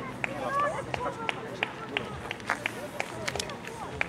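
A runner's footsteps on a gravel path, sharp regular strikes about three a second, under faint voices talking in the background.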